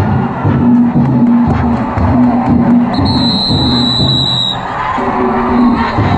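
Danjiri festival music: the cart's drums and gongs beat a repeating rhythm. A shrill steady whistle sounds about three seconds in and lasts about a second and a half.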